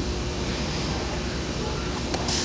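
Steady background noise of a large room: an even hiss with a low rumble, no distinct events.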